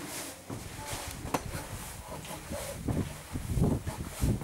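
Footsteps and scuffs on a stone spiral staircase, with handling knocks from a handheld camera. There is a sharp click about a second and a half in, and a run of low, irregular thumps near the end.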